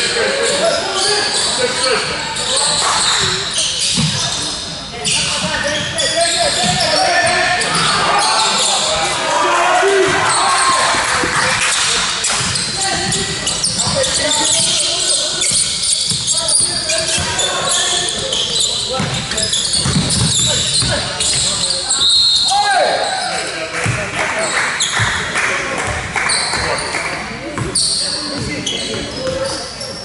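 Basketball game in a large gym: a ball bouncing on the hardwood court again and again, with players' and spectators' voices calling out throughout.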